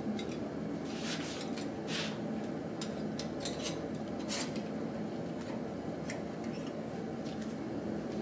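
Scattered light metal clinks of blacksmith's tongs and an iron workpiece being handled, over a steady low machine hum.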